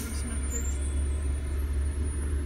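Steady low rumble of a running car heard from inside its cabin.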